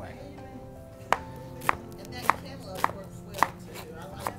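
A chef's knife chopping vegetables on a plastic cutting board: five sharp, evenly spaced strokes a little over half a second apart, starting about a second in.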